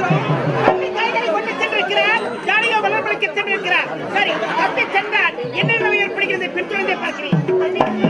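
A Tamil street-theatre performer's voice through a microphone and loudspeaker, in rapidly rising and falling lines, over steady tones from a harmonium.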